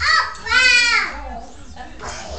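A young child's high-pitched squeal lasting about half a second, arching up and then down, with a shorter vocal burst just before it.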